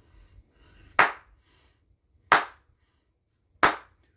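Three sharp single hand claps, evenly spaced a little over a second apart.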